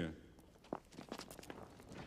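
Faint footsteps: a person walking across a church floor in short, uneven steps.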